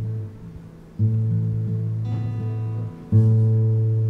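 Instrumental music: sustained strummed guitar chords, with a new chord struck about every two seconds.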